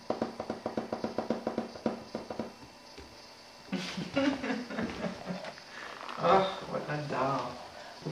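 A person laughing in a quick run of short pulses for about two and a half seconds, then quiet talking later on.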